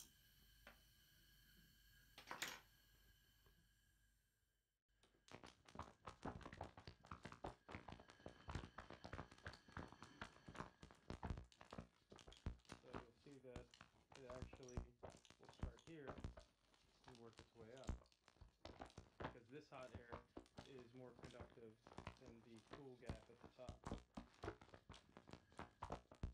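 Faint, indistinct voices of people talking in the background of a room, starting about five seconds in, with a single click before that.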